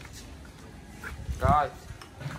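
A short, loud wavering cry about one and a half seconds in, over a low background murmur.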